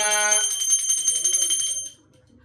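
Puja hand bell rung rapidly and without pause during the aarti lamp offering, with a voice chanting a mantra over it that stops about half a second in. The ringing cuts off abruptly just before the end.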